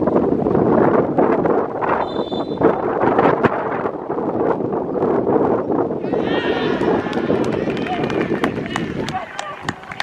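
Wind buffeting the microphone over an outdoor football pitch, with a referee's whistle blast about two seconds in. From about six seconds in, players shout and clap in celebration as the penalty kick is taken.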